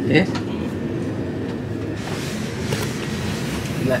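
Steady hum and hiss inside a stationary passenger train carriage, with its air conditioning running.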